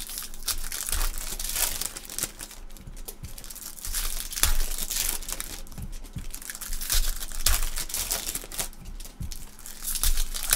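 Foil trading-card pack wrappers being torn open and crinkled by gloved hands, in repeated crackly bursts, with a few soft knocks.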